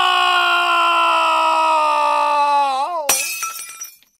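Added crash sound effect: a long held, voice-like cry sliding slowly down in pitch and wobbling near the end. A sudden smash with shattering glass follows about three seconds in, ringing briefly and fading out.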